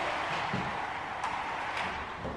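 Cordless horizontal window blind being raised by hand, the slats rustling against each other with a few faint ticks.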